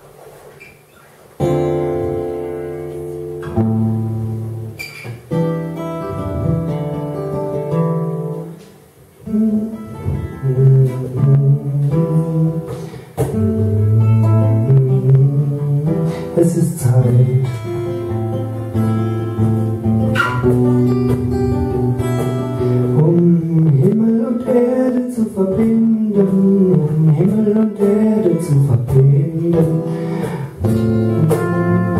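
Acoustic guitar playing a song's opening, with a cajón played along. The first notes start about a second and a half in, and there is a short drop in the playing around eight seconds in.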